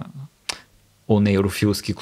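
Men's conversational speech with a brief pause, broken by a single sharp click about half a second in before talking resumes.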